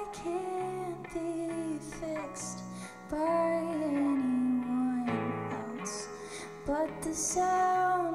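Live indie-folk band playing: a woman sings lead over electric guitar and drums, holding long notes that bend and slide, with a cymbal struck now and then.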